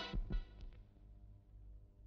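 Film soundtrack: the background music dies away at the start, followed by two soft low thuds about a fifth of a second apart, then only a faint low hum.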